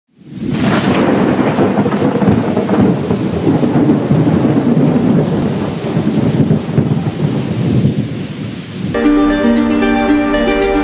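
Loud rumbling, rushing noise like a thunderstorm with rain, running steadily after a quick fade-in. About nine seconds in it cuts off and plucked-string music begins.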